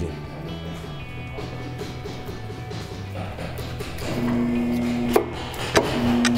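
Background guitar music with steady held notes that grow louder partway through. Near the end, a couple of sharp knocks.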